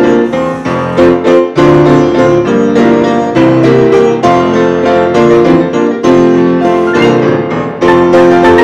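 Two grand pianos played together in a busy instrumental passage: a steady stream of struck notes and ringing chords.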